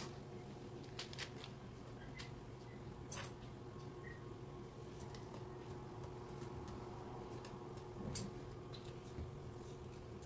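Faint bubbling of boiling broth in a pan, with soft squishes and a few light clicks as blocks of instant noodles are pushed down into it, over a steady low hum.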